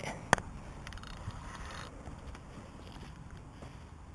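Faint rustling handling noise from a fishing rod and spinning reel held right by the microphone, with one sharp click about a third of a second in.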